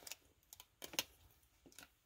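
Faint, irregular clicks and taps of a padlock in its plastic blister pack being handled, about five in all, the sharpest about a second in.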